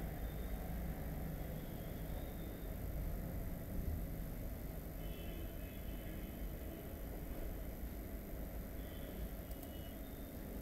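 Steady low background rumble of microphone room noise, with a faint constant high whine and a few faint short high tones about halfway through and near the end.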